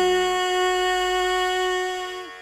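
A woman's voice holding one long, steady note in a Carnatic devotional song, fading slightly near the end.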